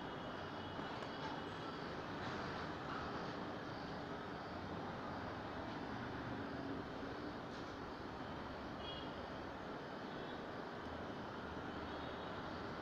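Steady background noise like distant traffic, with a few faint high-pitched tones and light clicks.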